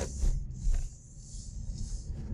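Car cabin noise as the car pulls away from a stop sign through a left turn: a steady low engine and road rumble with a faint hiss.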